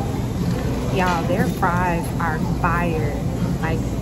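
Steady low hum of a restaurant dining room, with a person's voice talking briefly from about a second in.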